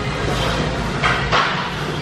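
Two short, forceful breaths of effort from a man pressing a Smith-machine bench press, about a second in and again a moment later, over a steady low background hum.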